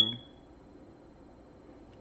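A short high-pitched beep at the very start, fading within about half a second, then quiet room tone.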